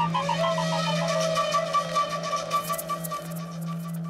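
Background score music: a steady low drone under a long held melody line, with a quick repeating high note figure running over it.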